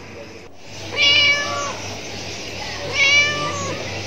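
A cat meowing twice, two drawn-out meows about two seconds apart, each lasting under a second.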